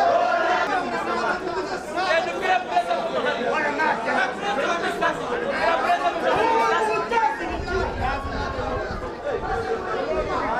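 Football crowd chatter: many voices talking and calling out at once, none standing out.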